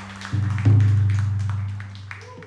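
Electric bass sounding low notes: a new note about a third of a second in, then a louder one that rings and fades over about a second and a half, with a few light percussive taps.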